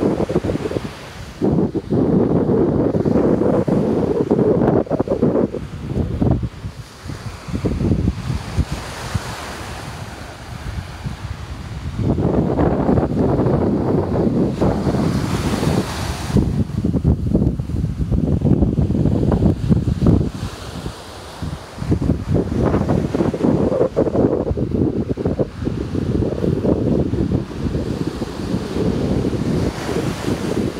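Wind buffeting the phone's microphone in uneven gusts, over the hiss of ocean surf breaking on the beach.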